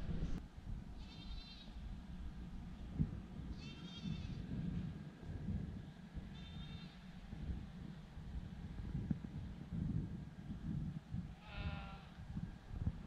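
Bleating livestock calling four times at intervals, short wavering cries, the last one lower-pitched. Wind rumbles on the microphone throughout.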